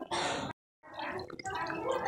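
Water running from the spigot of a plastic water container onto hands and splashing during handwashing. There is a brief total break in the sound just over half a second in.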